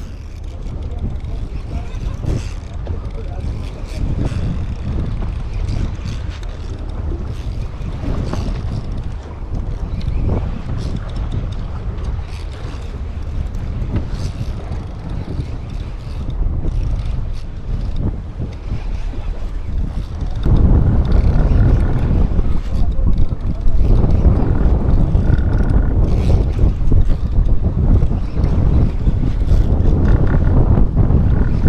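Wind buffeting an action camera's microphone on a fishing boat at sea, with scattered soft handling knocks. About twenty seconds in it gets louder and heavier in the low end.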